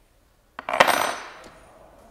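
Metal engine parts clattering onto a workbench: a quick cluster of metallic knocks about half a second in, with a brief bright ringing that fades within a second.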